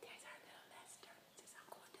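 Faint whispering voice, soft and breathy, with a few small clicks.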